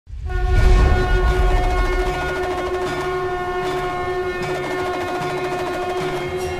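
A conch shell (shankh) blown in one long, steady, horn-like note, over a deep rumble in the first two seconds and soft rhythmic beats underneath, as a title fanfare.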